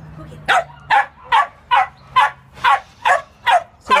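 A dog barking in an even run of about nine short, sharp barks, a little over two a second, starting about half a second in.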